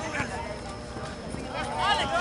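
Voices shouting across a soccer field, faint at first and growing louder near the end, with a few soft knocks among them.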